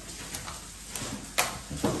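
Stanley knife cutting and handling hard plastic packaging: a couple of faint ticks, then one sharp click just under a second and a half in.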